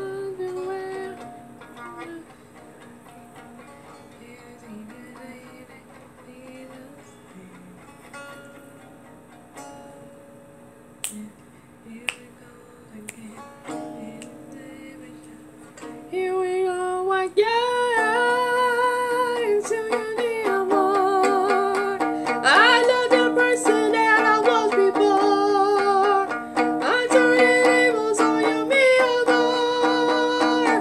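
A violin plucked pizzicato, held like a ukulele, playing a soft accompaniment. About sixteen seconds in, a woman's voice comes in singing much louder with vibrato over the plucked strings.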